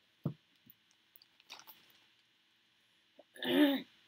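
A person clearing their throat near the end. Before that comes a brief low thump about a quarter second in, then faint handling noise.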